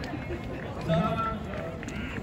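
Indistinct voices talking over steady low outdoor background noise.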